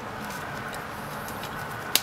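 Low steady background hiss, then a sharp knock near the end as a glass jar of broken Duplo plastic pieces is knocked to settle the pieces into an even layer.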